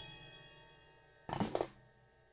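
The drum-kit music breaks off and is followed by quiet. About 1.3 s in there is a single short, soft knock lasting under half a second, from the drummer's sticks touching the kit.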